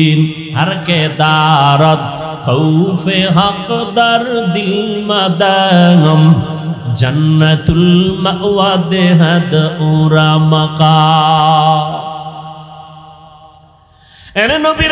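A man's voice chanting in the melodic, drawn-out sermon tune of a Bangla waz, holding long notes with wavering ornaments. It fades away over the last two seconds.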